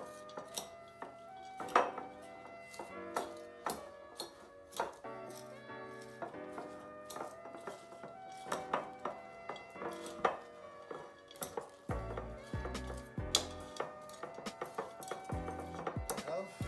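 Background music with scattered light clinks and scrapes of a metal utensil against a glass bowl as shredded cabbage, carrot and red pepper are tossed together for coleslaw.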